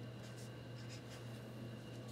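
Felt-tip marker writing on a paper card: a few faint, short strokes, over a steady low hum.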